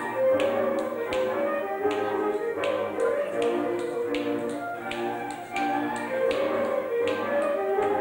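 Transylvanian folk dance music from the Mezőség region, a continuous melody over a bass line, with sharp slaps about twice a second at an uneven rhythm: the dancer's hands striking his legs and shoes in a men's solo dance.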